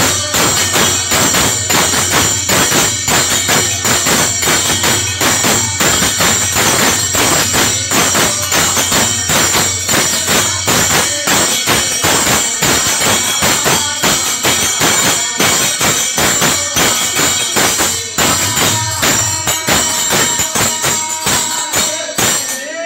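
Live devotional bhajan music: a fast, steady beat of small metal hand cymbals and clapping over a dholak drum and harmonium.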